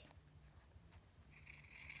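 Near silence: a low steady hum, with a faint rasp near the end from pinking shears cutting the raw edge of a cotton seam.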